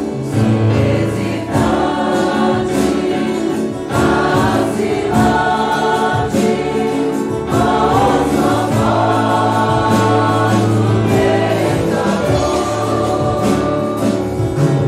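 A congregation sings a Portuguese hymn together as a group, over keyboard and instrumental accompaniment with a steady bass line.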